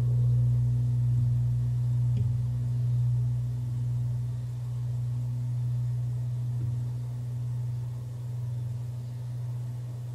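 Low sustained musical drone, one deep steady tone with a faint higher overtone, slowly fading away.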